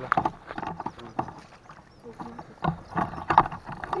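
Voices talking in short, indistinct bursts, with scattered clicks and knocks throughout.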